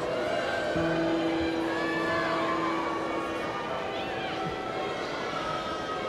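High school choir singing, holding a long note from about a second in.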